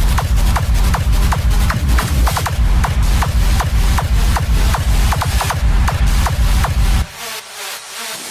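Loud hardstyle DJ set: a heavy, pounding bass kick under short, repeated high synth stabs. About seven seconds in, the bass and kick cut out suddenly, leaving a quieter, thinner stretch.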